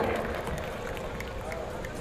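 Pause in an amplified open-air speech: the man's voice over the loudspeakers trails off and leaves a steady, low background noise of the outdoor crowd.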